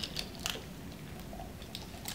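A spoon stirring thick flour-and-milk batter in a large ceramic mug, quietly, with a few light clicks of the spoon against the mug in the first half second.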